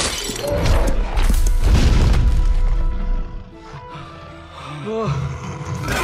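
Film soundtrack: dramatic orchestral score under heavy crashing and rumbling impact effects for about the first three seconds. It then drops to a quieter stretch, with a short rising cry about five seconds in.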